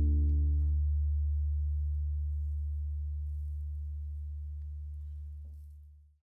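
The final chord of a song ringing out on acoustic guitar and electric bass guitar. The guitar's higher notes die away within the first second, while a low bass note lingers and fades slowly to silence at the very end.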